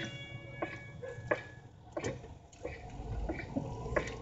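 Radio-drama sound effect of footsteps on wooden boards: a row of evenly spaced sharp knocks, about one every two-thirds of a second, as someone walks up.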